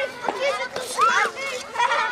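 A group of children talking and calling out over one another, a busy, high-pitched chatter.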